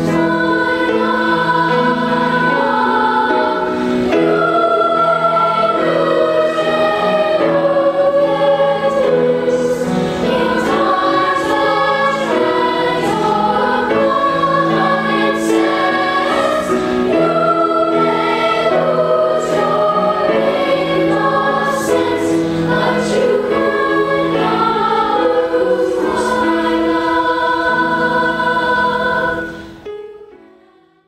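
Background music: a choir singing over sustained accompaniment, fading out at the end.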